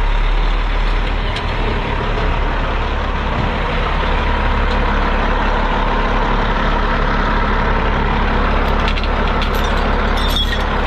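Heavy diesel truck engine idling steadily, a constant deep rumble. A few light clicks sound near the end.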